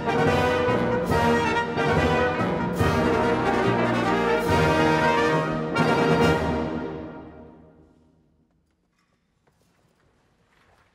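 Symphonic wind band with brass soloists playing loud, accented chords. A last chord about six seconds in dies away in the hall's reverberation, leaving near silence for the final second or so.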